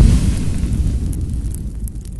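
Logo-sting sound effect: a deep rumbling boom slowly dying away, with a few faint sparkling ticks on top.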